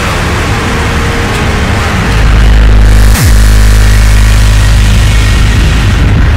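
Speedcore electronic music, a dense noisy wall of sound. About two seconds in, a very loud deep bass comes in, and a quick falling pitch sweep cuts through it just after three seconds.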